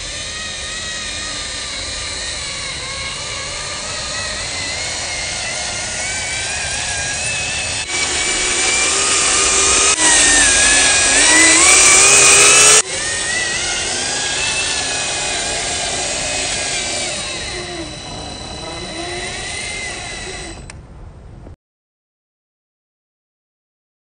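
A 1:14-scale RC Scania truck's electric motor and all-metal gearbox whining under a heavy load of concrete blocks, the pitch rising and falling as it crawls up a rough ramp. The sound changes abruptly several times, is loudest for a few seconds in the middle, and cuts off suddenly near the end.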